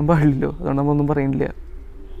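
A man's voice, two drawn-out phrases, with a faint low sound near the end.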